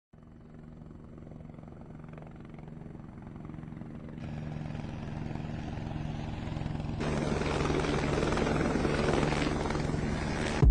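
Helicopter rotor and engine sound with a rapid chop, growing steadily louder from nothing and filling out in two steps, about four and about seven seconds in.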